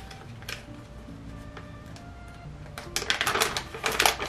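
Soft background music, with packaging being handled: a click about half a second in, then a quick run of clicks and rustles near the end as products are taken out of a box.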